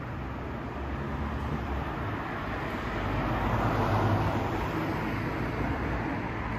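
Road traffic: a motor vehicle passing along the street, its engine and tyre noise swelling to its loudest about four seconds in, then fading.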